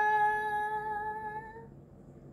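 A woman singing unaccompanied, holding one long note at a steady pitch that fades away and stops shortly before the end.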